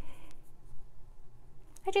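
Faint rustling of a knitted wool shawl and yarn tassel being handled close to a clip-on microphone, softer after the first moment.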